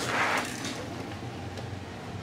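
A brief rustle near the start, then a faint steady low hum with light hiss.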